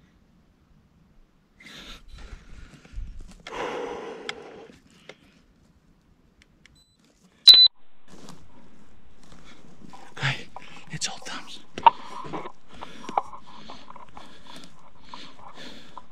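A single rifle shot, sudden and by far the loudest sound, about seven and a half seconds in, with a brief ringing after it. Before it there are faint shuffling and breathing sounds; after it a steady low hiss runs on with scattered small clicks.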